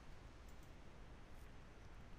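Near silence: faint room hiss with a few faint clicks, about half a second in and again near one and a half seconds.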